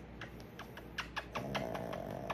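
A quick series of short, sharp kissing smacks, about five a second, as a person kisses a small dog held against her face.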